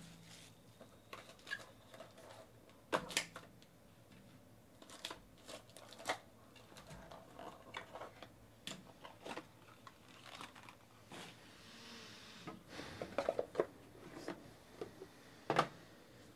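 Faint handling noise of trading cards and their packaging: scattered light clicks, taps and crinkles as a pack is opened and cards are taken out and set down.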